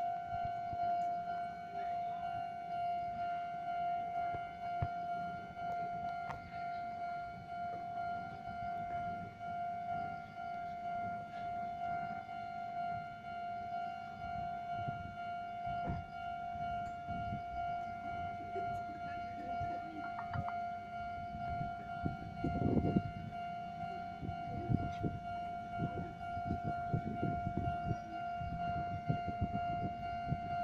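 Japanese level-crossing warning alarm sounding continuously as a single high electronic tone. In the second half, low irregular rumbling knocks join in.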